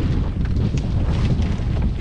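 Wind buffeting the microphone aboard a sailing yacht under way: a steady low rumble.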